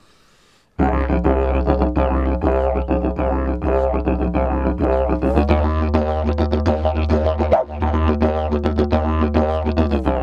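A didjeribone, a telescoping slide didgeridoo, starts up sharply about a second in and plays a steady low drone with a quick rhythmic pulse of shifting overtones. Its bottom note shifts about halfway through as the slide is moved, and the drone dips briefly a little later.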